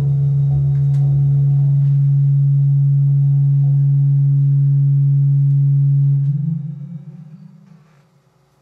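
Amplified cello holding a single low drone note, steady and loud, then fading out over the last two seconds with a slight rise in pitch.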